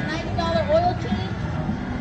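Mostly voices: a raffle announcer's voice over a loudspeaker and people talking nearby, over a low steady outdoor rumble.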